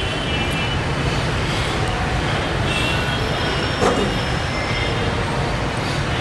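Steady, low rumbling background noise picked up through the pulpit microphone, with a brief faint knock about four seconds in.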